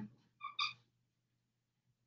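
A pause in speech: a short, faint vocal sound about half a second in, then near silence.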